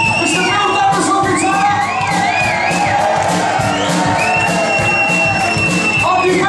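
A live band playing with a steady drum beat, while the crowd cheers and whoops.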